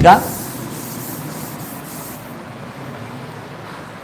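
Steady background hiss with no distinct events; a higher, thinner layer of hiss cuts out a little past halfway.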